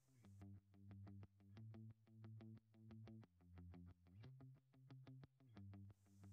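Faint synthesizer background music: a soft, even pulse of sustained keyboard notes repeating roughly every two-thirds of a second.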